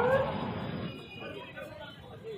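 A drawn-out call from a voice at the very start, its pitch rising and falling as it fades, followed by faint, scattered voices.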